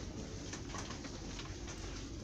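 Low steady shop background noise with a few faint rustles and clicks as a faux-fur throw is handled on the shelf.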